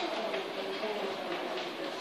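Faint distant voices over steady open-air background noise.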